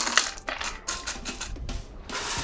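Crushed ice dropped by hand into a hurricane glass, a quick run of small clicks and crunches, loudest at the start.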